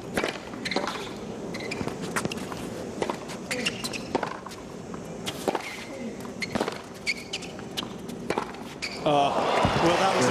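A tennis rally on a hard court: tennis balls struck by racquets and bouncing, sharp hits about once a second, with short squeaks between them. About nine seconds in, the crowd breaks into applause and cheering as the point ends.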